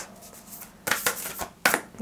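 A deck of astrology cards being shuffled by hand: a few short flicks of the cards, the loudest about a second and a half in.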